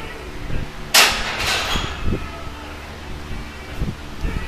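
Loaded barbell racked into the steel J-hooks of a Rogue power rack: a loud metal clang about a second in, followed closely by a second, weaker clang, each ringing briefly.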